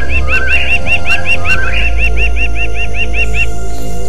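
Birds calling: a quick, even run of short chirps, about five a second, with lower sliding calls beneath, stopping about three and a half seconds in. A low droning music bed runs underneath.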